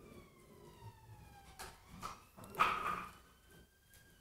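A faint siren wail: one long tone falling slowly for about a second and a half, then a second long tone gliding slowly upward near the end. A brief rustle falls between them.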